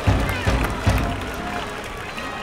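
School baseball cheering section: a brass band and drums playing a cheer song while massed students chant along in unison. Heavy drum beats come about two or three a second in the first second, then held brass and voices carry on.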